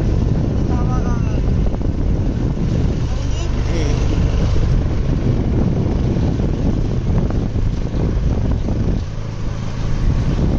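Wind buffeting the microphone over the steady rumble of a vehicle travelling along a road, heard from on board.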